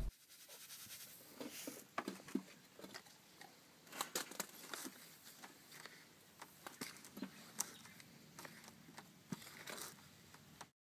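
Hand trowel stirring dry peat moss and composting-toilet starter in a plastic tub: faint, irregular rustling and scraping with many small crunchy ticks.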